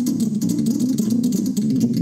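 Electronic keyboard played live: a dense stream of rapid low notes with scattered sharp clicks over the top.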